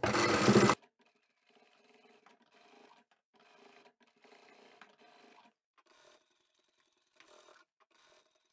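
Sewing machine running briefly as it stitches fabric, stopping abruptly under a second in. After that there is near silence, with only a few very faint machine sounds.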